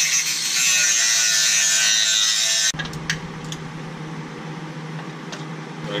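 Cutoff wheel cutting into the metal edge of a Honda CR-V's rear trailing arm, trimming it so the shock body clears after a 4-inch lift. It runs as a high, hissing grind and cuts off abruptly about two and a half seconds in. A few light clicks of handling follow.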